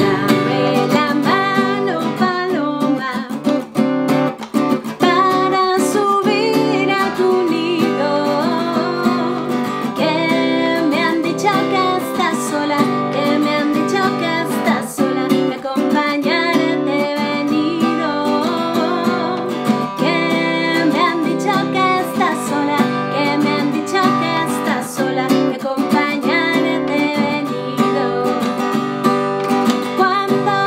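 A woman sings in Spanish over her own strummed Gibson acoustic guitar, in an upbeat dance song. The music starts abruptly at the beginning and carries on steadily.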